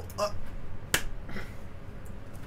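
A single sharp click about a second in: a computer mouse click taking the video player out of full screen.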